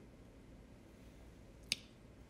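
A single short, sharp click about three-quarters of the way through, over faint room tone.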